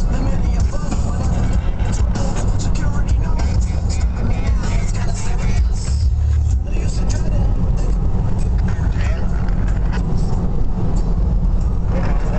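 Steady low road and engine rumble heard from inside a car travelling at motorway speed.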